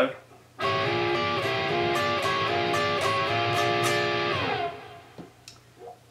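Electric guitar, tuned down a semitone, sounding a B7 chord at the 10th and 11th frets, picked in a steady rhythm and ringing for about four seconds. Near the end the chord slides down in pitch and dies away.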